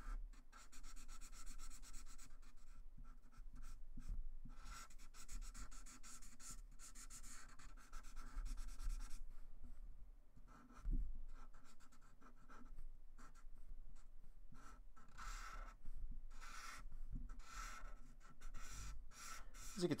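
Sharpie felt-tip marker rubbing across drawing paper in many short, repeated strokes as black ink is laid down.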